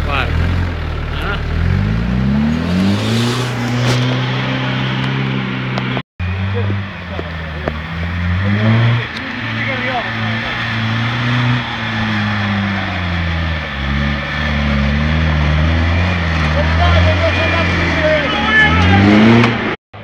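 Off-road 4x4 engine revving under load as it works up a steep, muddy climb, its pitch climbing, holding and falling back again and again as the throttle is worked.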